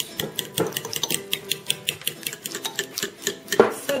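A spoon beating garlic yogurt in a glass bowl, clinking against the glass in a quick steady rhythm of about four or five strokes a second, with one louder knock near the end.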